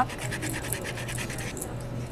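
Sanding block rubbed over an embossed metal pendant blank in quick, short back-and-forth strokes, a fast dry scratching that eases off in the last half second. This is the abrasive side of the block scuffing the raised areas of the design to highlight them.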